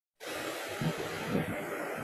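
A steady hiss of background noise, with two soft low bumps about a second in.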